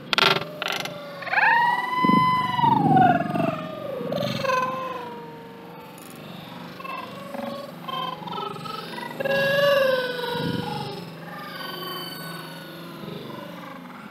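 Long, drawn-out animal cries that glide up and then down in pitch: a strong one about a second in and a fainter one near ten seconds in, with a few short clicks at the start.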